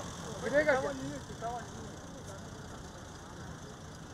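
A person's voice calling out briefly in the first second and a half, over steady outdoor background noise.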